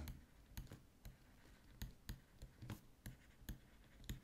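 Near silence with faint, scattered clicks and taps of a pen stylus on a drawing tablet during handwriting.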